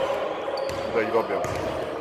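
Basketballs bouncing on a sports-hall floor: several separate thuds in a large, echoing hall, with background voices and a faint steady tone.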